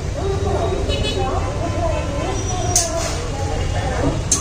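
A person's voice chanting in held, sliding notes over a steady low rumble, with one sharp click nearly three seconds in.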